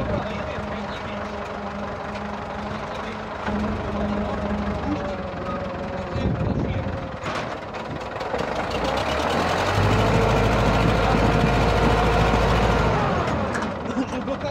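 Massey Ferguson 260 tractor's three-cylinder diesel engine running at idle, with a sharp click a little past halfway; about two-thirds of the way through the revs are raised and held for a few seconds, then drop back to idle.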